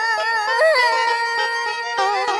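A singer in a Vietnamese tân cổ song holds a high note with wide vibrato, which steadies about a second in, over instrumental accompaniment.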